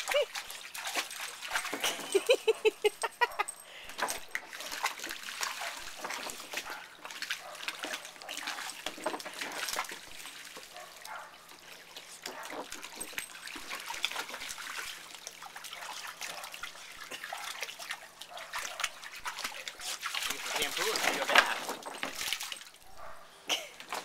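Water splashing and sloshing in a shallow vinyl kiddie pool as a Boston terrier wades through it and paws at the pool's soft wall, spilling water over the rim. The splashing grows louder for a couple of seconds near the end.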